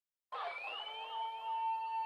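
Electronic synthesizer intro of an R&B song: after a brief silence, a steady held tone comes in with a string of short rising swoops above it.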